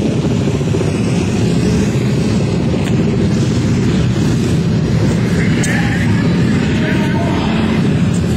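Flat-track racing motorcycles' engines running, a loud, steady drone with no break.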